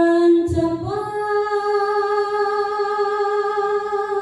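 A woman singing solo in qasidah style, holding one long note that steps up in pitch about a second in. There is a single low thump just before the step.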